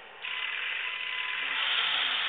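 A radio-controlled model tank's small electric motor and fan machinery giving a steady whirring hiss, which starts a fraction of a second in, while its smoke unit puffs smoke out of the rear pipes.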